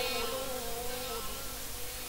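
Pause between verses of amplified Quran recitation. A faint steady tone left from the reciter's last held note dies away a little over a second in, leaving the sound system's low hiss and hum.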